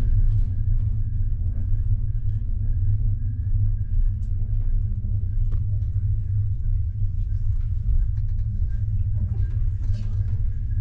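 Steady low rumble of a passenger train running, heard from inside the carriage, with a faint steady high tone above it.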